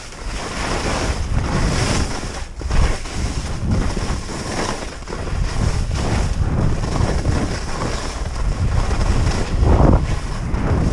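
Wind rushing over an action camera's microphone as a skier descends, with the hiss and scrape of skis on tracked-up snow swelling and fading with the turns. The loudest gusts come about three seconds in and just before the end.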